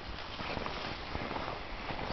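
Footsteps on a grassy, muddy riverbank, as irregular soft steps over a steady outdoor noise.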